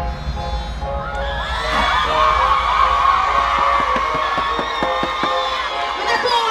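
Dancehall music playing loud over a stage sound system, with a large crowd cheering and screaming over it; the screaming swells about a second and a half in.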